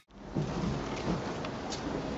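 Steady low rumbling outdoor background noise on the camera microphone, with a few faint light ticks.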